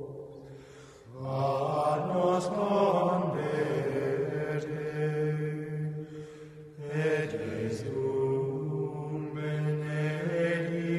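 Male plainchant singing in long, slowly moving held phrases, with a pause between phrases about a second in and another shortly before seven seconds.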